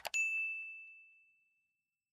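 A mouse-click sound effect, then a single bright bell ding that rings out and fades over about a second and a half: the notification-bell chime of a subscribe-button animation.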